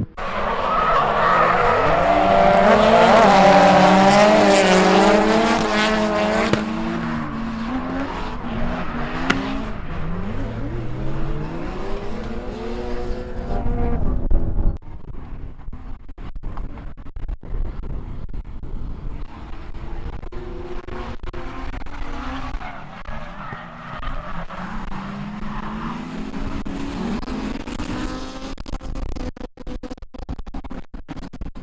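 Several drift cars sliding in a tandem train, their engines revving up and down against one another with tyres squealing. It is loudest in the first few seconds, then cuts abruptly about halfway through to a quieter, more distant pack, with wind buffeting the microphone.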